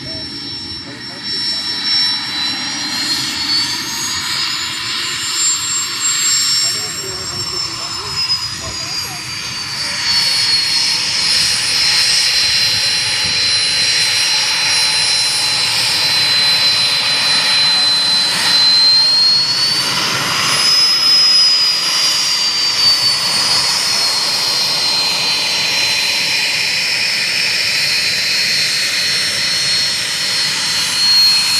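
Twin rear-mounted turbofans of a small business jet at taxi power, a high whine that slides up and down in pitch over a steady rush. It gets louder about ten seconds in as the jet comes closer.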